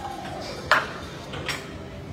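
Two metallic clanks of an iron weight plate on a loaded barbell. The first, about two-thirds of a second in, is loud and rings briefly. The second, softer, comes under a second later.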